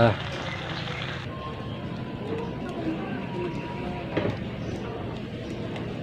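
Wok of small fish boiling in water over a wood fire: a steady bubbling hiss that grows fainter and duller about a second in.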